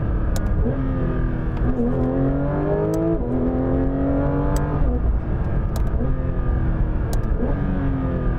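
Porsche 911 GT3 RS's naturally aspirated flat-six, heard from inside the cabin in Track mode, accelerating hard through the PDK gearbox. The pitch climbs and drops sharply with quick upshifts about two and three seconds in, climbs again, then falls away. Sharp, loud clicks of the shift paddles come several times.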